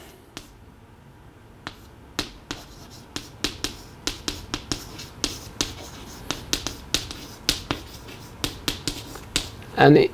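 Chalk tapping and clicking against a chalkboard as capital letters are written: an irregular run of sharp taps that begins about two seconds in and goes on until just before the end.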